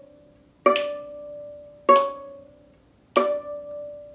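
Viola played pizzicato: three single notes plucked on the A string, about a second and a quarter apart, each ringing briefly and fading, in time with a slow count of about 50 beats a minute.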